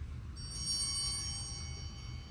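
Altar bell (sanctus bell) rung once about a third of a second in, its high ringing tones fading away over about a second and a half: the bell that marks the elevation of the chalice at the consecration of the Mass.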